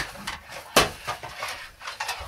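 Hard plastic knocks and clicks of a NAO humanoid robot's body and limbs being handled and set down on a table: a sharp knock at the start and another a little under a second in, with lighter clicks between.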